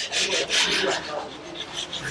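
Rustling and rubbing noise of clothing brushing against a clip-on lapel microphone as a man shifts in his seat, in a few soft surges that ease off toward the end.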